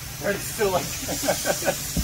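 Compressed air hissing steadily into a drag-radial tire on a tire changer, starting about half a second in, with people talking over it.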